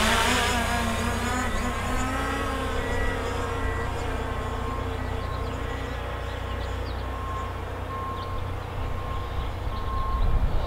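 Hubsan Zino quadcopter's propellers buzzing with a whine of several steady tones as it flies backward and climbs away, gradually growing fainter. Wind rumbles on the microphone underneath.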